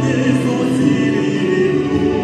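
Live vocal number in operatic style: a male singer sings into a handheld microphone over amplified instrumental accompaniment, holding long sustained notes.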